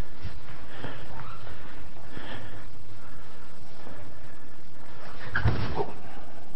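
Faint breathing over a steady background hiss, with a short voiced exhale near the end.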